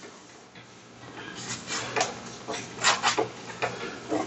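Folded paper towel rubbed back and forth over a dry-erase painted panel, erasing marker writing. After a quiet first second comes a run of quick swishing strokes, seven or eight of them.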